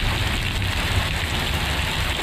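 Heavy rain pouring steadily: a constant hiss with a low rumble underneath.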